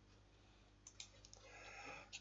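Near silence with a few faint clicks of a computer mouse about a second in, as the document page is scrolled.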